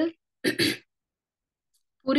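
A person clearing their throat once, briefly, about half a second in, followed by complete silence.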